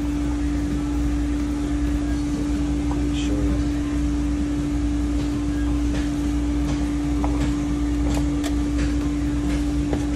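A steady machine hum with one held tone, and a few faint light clicks from a worn universal joint rocked back and forth by hand. The joint has play because a needle bearing has come out of one of its cups.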